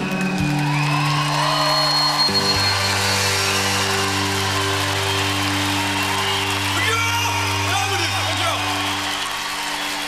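A live rock band holding sustained chords, the chord changing about two seconds in, while a concert crowd cheers and whoops over it.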